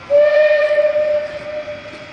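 A steam locomotive's whistle sounding one steady blast of about a second and a half, loudest at first and fading away in the second half.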